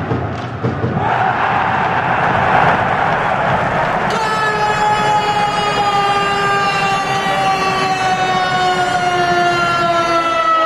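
Ice hockey arena crowd cheering as a goal is scored, then about four seconds in the arena's goal horn sounds one long held note that sags slightly in pitch.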